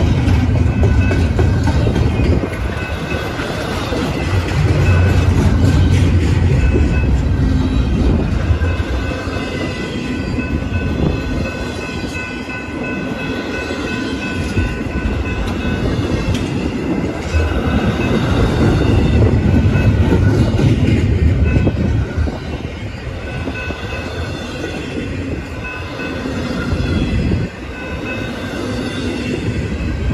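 Double-stack intermodal container cars rolling past at a grade crossing: a steady heavy rumble that swells and eases as the cars go by, with wheels clicking over the rails.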